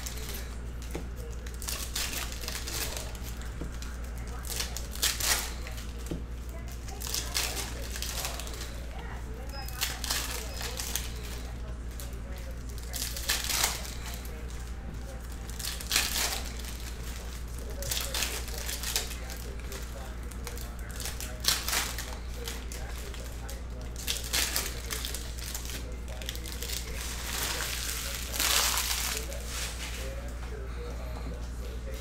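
Foil trading-card pack wrappers crinkling in the hands as packs are opened and the cards handled, in short rustles every second or two. A steady low hum runs underneath.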